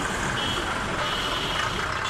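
Busy street traffic noise, a dense steady din of vehicles. A thin, high steady tone sounds in short stretches: briefly about a third of the way in, then longer from about halfway.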